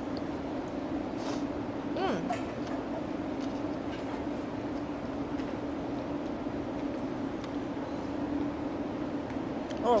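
A mouthful of noodles slurped once about a second in, followed shortly by a brief 'mm', over a steady low mechanical hum and a few faint clinks.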